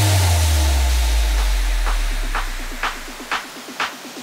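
Electronic house music. A deep sub-bass boom with a hiss-like noise wash hits at the start and fades away over about three seconds. Percussion then grows in: clap-like hits about twice a second over quick, short ticks.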